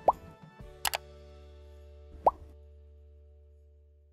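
Editing sound effects over the tail of background music: a short pop rising in pitch near the start, a sharp double click about a second in, and a second rising pop a little over two seconds in. Held music notes sustain beneath and fade out at the end.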